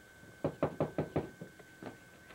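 Knuckles rapping on a wooden front door: a quick run of five knocks starting about half a second in, then one more, softer knock near the end.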